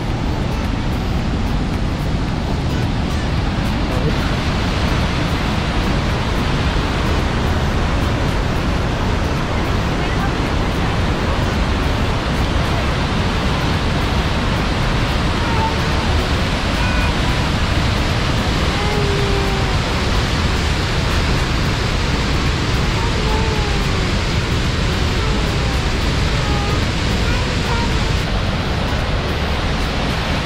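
Steady rushing roar of a large waterfall, white water pouring over a rock ledge into a narrow gorge. Faint voices come and go in the second half.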